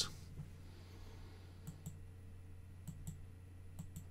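Faint clicks of a computer mouse, mostly in pairs a fraction of a second apart, starting about one and a half seconds in, over a low steady hum.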